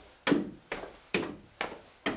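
Sneakers stepping up onto the wooden seat of a small classroom chair and back down to the floor, one foot after the other, a short knock about twice a second.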